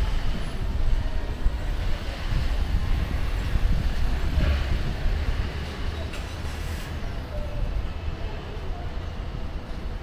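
Steady low rumble of vehicle noise with a general street hum, with no single event standing out.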